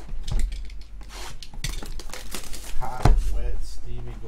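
Cardboard trading-card hobby boxes being handled on a table, with scraping and rustling and a sharp knock about three seconds in as a box is set down. A brief murmured voice around the knock.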